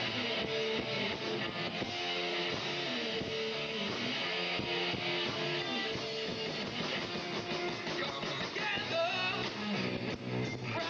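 Rock band playing live, with guitar to the fore over a steady, dense band sound.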